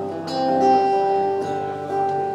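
Acoustic guitar strumming chords, the notes ringing on between strokes, with a fresh strum about a second and a half in.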